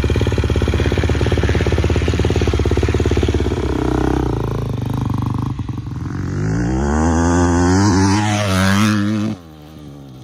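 Motocross bike engine idling steadily close by, then a motocross bike revving and accelerating away with its engine note rising and falling. The sound drops off suddenly about nine seconds in.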